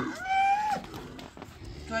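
The last moment of a cow's moo, then a short high-pitched call lasting about half a second.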